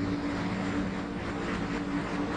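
A steady mechanical drone with a low hum and even hiss, with no clear starts or stops.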